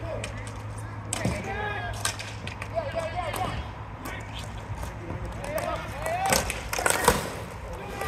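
Ball hockey play on a sport-tile rink: scattered sharp clacks of sticks and ball, with players' distant shouts and a steady low hum underneath. The clacks come thickest and loudest between about six and seven seconds in.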